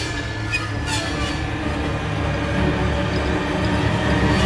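Horror-film sound-effect drone: a dense low rumble, like a train passing, that slowly grows louder, with brief high metallic screeches over it.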